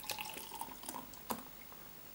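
Heineken lager poured from a glass bottle into a beer glass, gurgling and splashing as the glass fills and foams up. The pour is loudest in the first second, with one sharper tick a little after a second in, and stops about a second and a half in.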